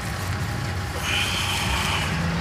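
Steady low rumble of motor vehicles, with a thin high tone joining about a second in.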